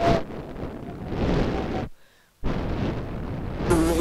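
A rushing, rumbling noise like wind on a microphone, which cuts out for about half a second near the middle. Near the end a wavering insect buzz starts: the mosquitoes' buzzing.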